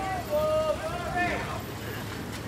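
People talking, unclear words over steady city street noise.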